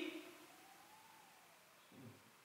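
Near silence: room tone in a pause between words, with a very faint tone that slowly rises and then falls.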